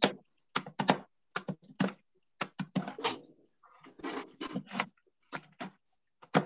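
Irregular series of short, sharp clicks and light knocks, about two a second with brief pauses, from pieces of candle wax being handled and put into a pot.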